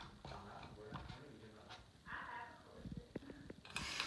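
Faint conversation from another room, with a few light clicks and a short knock near the end as a hand handles the ceiling fan's light kit and glass shade.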